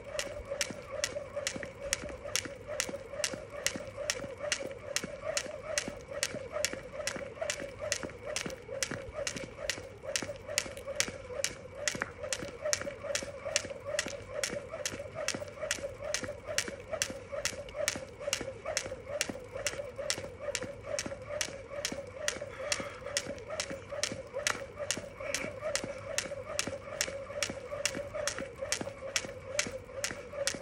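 A skipping rope slaps the asphalt on each turn as the jumper lands, in a steady, unbroken rhythm of about two and a half beats a second.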